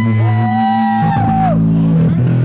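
Electric bass solo through an amplifier: a low note held beneath high sustained notes that slide up, hold and bend down about a second and a half in, with the low note changing about a second in.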